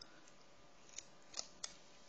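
Three faint, sharp metal clicks of scissors: the first about a second in, the loudest a little after, and a third close behind it.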